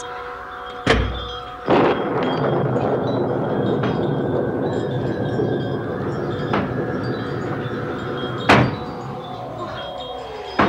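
Séance sound effects over eerie sustained chiming music. A heavy thud comes about a second in, then a steady rushing noise runs until a sharp knock near the end, and a falling tone follows just after.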